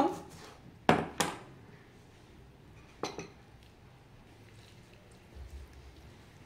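A serrated kitchen knife knocking on a plastic cutting board as a lime is cut in half: two sharp knocks about a second in, a third about three seconds in.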